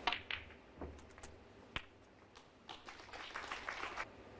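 Snooker balls clicking: sharp knocks near the start, a single crisp cue-tip strike on the cue ball a little under two seconds in, then a rapid flurry of clicks as balls knock together in the pack of reds.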